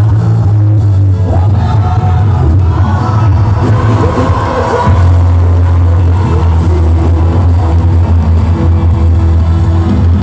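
Live band music through a concert PA, with a heavy, steady bass line and singers' voices over it.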